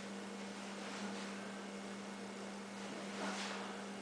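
A steady low electrical hum on a single pitch over a background hiss, with two faint rushing swells, one about a second in and one near the end.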